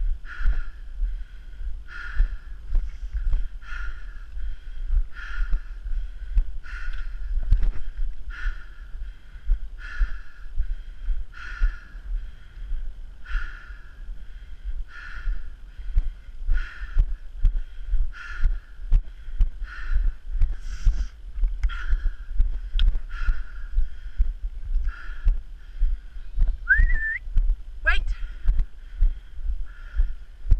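A person walking steadily over rough grassland, with a rhythmic swishing sound a little faster than once a second from the steps, and a constant low rumble from the moving camera and wind. A short rising whistle-like call sounds near the end.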